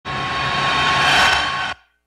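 A transition 'whoosh' sound effect between the anchor and the report: a burst of noise with a faint steady tone in it, swelling for a little over a second and then cutting off suddenly just before the end.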